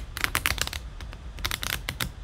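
Tarot cards being shuffled or handled: two quick runs of crisp card clicks.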